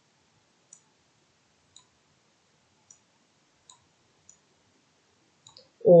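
Faint, sharp clicks, about one a second and unevenly spaced, in an otherwise quiet room. A voice begins right at the end.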